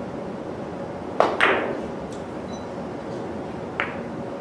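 Three-cushion carom billiards shot: two sharp clicks about a quarter-second apart, the cue tip striking the cue ball and then the cue ball striking another ball, the second the loudest with a short ring. Faint knocks follow as the balls run around the cushions, and one more ball click comes near the end.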